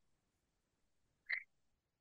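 Near silence on a video-call line, broken once by a brief short blip about a second and a quarter in.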